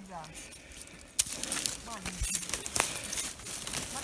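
Footsteps and handling in dry leaf litter and twigs, rustling and crackling, with a sharp twig snap about a second in.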